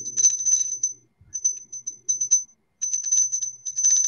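Small hand-painted glass bell shaken by hand, its clapper striking rapidly so the bell rings at a high, clear pitch. The strokes come in bursts: a quick run at first, a few scattered strokes after a short pause, then fast steady ringing through the last second or so.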